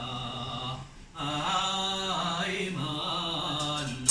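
A Taoist priest's voice chanting a ritual invocation in long, drawn-out sung phrases, with a short break about a second in.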